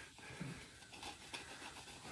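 Quiet workshop room tone with faint soft noises and one brief low sound about half a second in.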